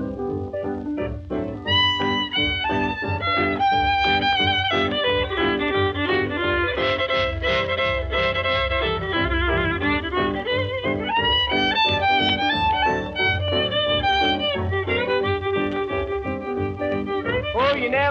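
Instrumental break in an early honky-tonk country record: a fiddle plays the lead with a wavering vibrato on its held notes over a steady rhythm section.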